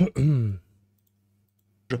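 A man's brief voiced utterance with a falling pitch at the start, then dead silence for over a second. A man's speech starts again near the end.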